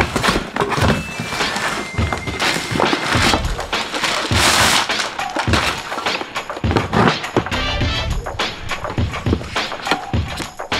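Background music over cardboard packaging being handled, with thunks and knocks as the box is pulled open and a robot vacuum is lifted out of it.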